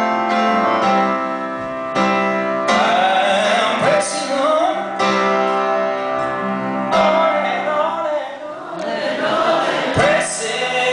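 Live piano with a man singing: chords struck every second or two, and a sustained, wavering vocal line entering about three seconds in.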